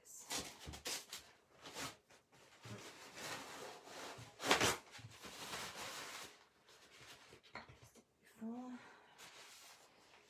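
Something rinsed under a running tap, with irregular splashing that is loudest about four and a half seconds in and stops about seven seconds in.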